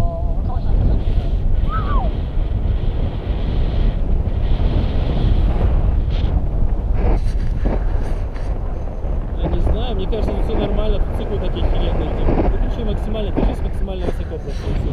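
Rushing air buffeting the camera microphone on a tandem paraglider in flight: a loud, steady rumble of wind noise. Faint voices come through it for a few seconds past the middle.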